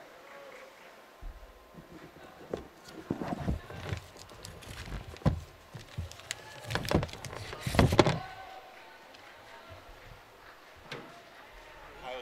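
Scattered knocks and thumps, several in a cluster through the middle with the loudest about eight seconds in, over faint voices and the echoing hum of a large indoor room.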